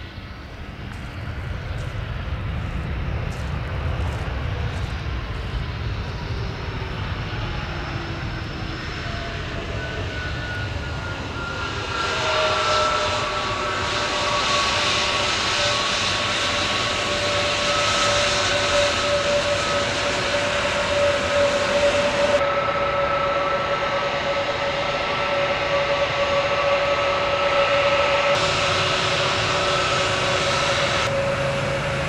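Airbus A321neo turbofan engines on the landing rollout and while taxiing: a low roar at first, then, from about a third of the way in, a louder high whine with several steady tones that slowly fall in pitch.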